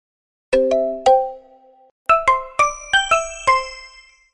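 Short bell-like chime jingle that serves as the company's sound logo: three struck notes, a brief pause, then a quicker run of six bright notes that ring out and fade.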